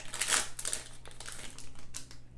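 Foil trading-card pack wrapper crinkling as it is pulled open and the cards are slid out. The crinkling is loudest about a third of a second in, fades, and ends with a short sharp crackle.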